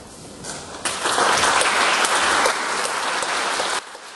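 An audience applauding, rising abruptly about a second in and cut off sharply near the end.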